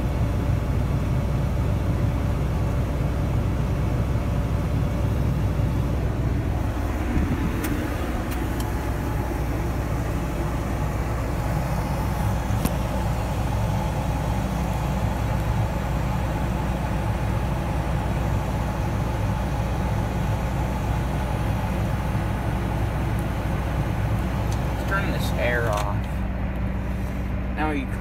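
John Deere 8335R tractor's six-cylinder diesel engine running steadily at a low, even purr, heard from inside the cab.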